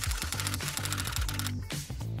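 Typewriter typing sound effect, a rapid even run of key clicks that stops about one and a half seconds in, over soft background music.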